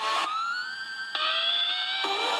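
Sustained electronic tones that glide upward and hold, with a second, lower tone joining about a second in, in a siren-like sound.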